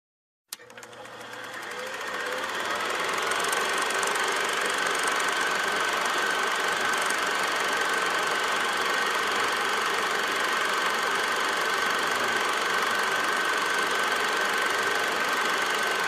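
Film projector starting with a click, its motor spinning up and growing louder over the first few seconds, then running with a steady whirring clatter and a thin high whine.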